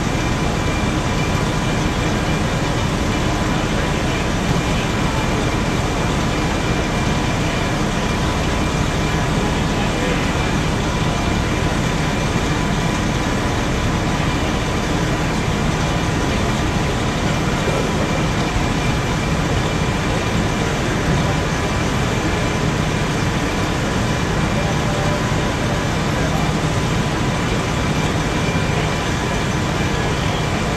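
Fire engine's diesel engine running its water pump: a loud, steady drone with a few constant whining tones, unchanged throughout.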